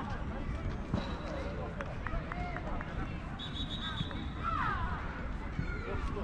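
Faint, distant shouts and calls of players across an outdoor football pitch over a steady low rumble, with a brief high steady tone about three and a half seconds in.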